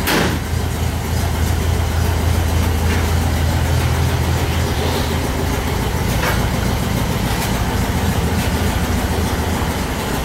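Volkswagen Kombi's air-cooled flat-four engine idling steadily with a low, even hum. A brief knock sounds right at the start, and a few faint clicks follow.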